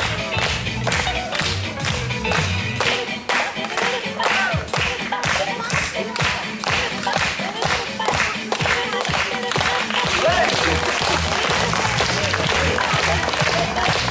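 Backing music with a steady beat, and an audience clapping along in time.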